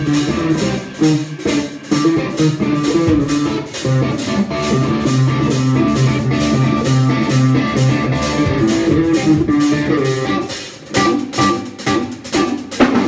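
Parker Fly Deluxe electric guitar played through an amplifier with a live band: guitar lines over bass and a drum kit keeping a steady cymbal beat. The level dips briefly near the end, and then the drums come forward.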